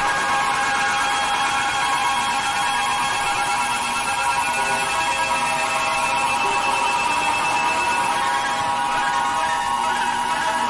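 Electronic drone music: a dense cluster of sustained tones, mostly high-pitched, held steady at an even level without a break.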